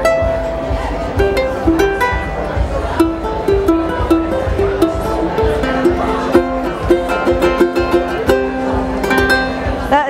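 A handmade Stansell ukulele, built on the maker's flamenco guitar design, played with a quick run of plucked notes and chords, the notes changing several times a second.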